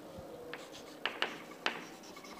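Chalk writing on a chalkboard: four short scratchy strokes and taps of the chalk, between about half a second and a second and a half in.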